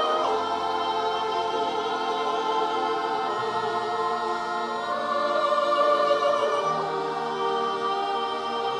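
A female soloist singing into a microphone together with a children's choir and a school orchestra, in long held notes.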